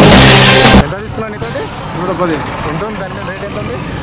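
Loud news theme music that stops abruptly with a noisy hit under a second in. Street sound follows: voices talking over running vehicle engines.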